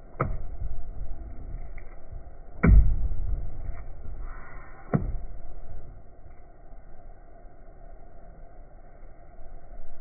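Hands striking and plunging into thick cornstarch-and-water oobleck in a plastic bowl: three dull thumps a couple of seconds apart over a low rumble, then quieter squelching as a hand works in the mixture.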